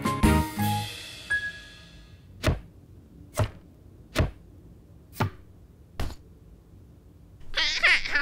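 A children's tune ends on a ringing chime, followed by five short, sharp clicks about a second apart as hands handle a candle holder and a paper lantern box. Near the end a wavering, high-pitched voice-like call begins.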